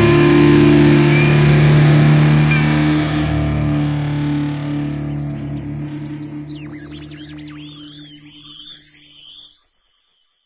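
A post-rock song ending: a held electric guitar chord rings out and fades, stopping near the end. High thin effect tones glide slowly upward above it, then waver as everything dies away.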